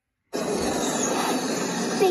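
A steady rushing noise from the cartoon's soundtrack starts suddenly after a moment of silence and carries on evenly.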